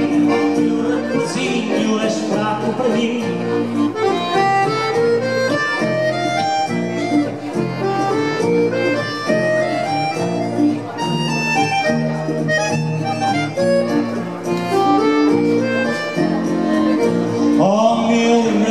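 An instrumental passage of Portuguese-style music, with an accordion carrying the melody over guitar and bass accompaniment. A voice comes back in right at the end.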